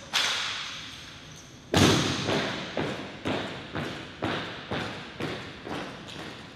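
A sharp strike at the start and a heavier thud just under two seconds in, both echoing, then marching heel strikes on a hard floor at about two steps a second.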